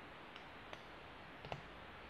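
Three faint, short clicks of a shotgun trigger group being worked by hand: a Benelli trigger fitted in a Franchi Affinity trigger group, its safety being pushed toward safe, which will not go all the way on.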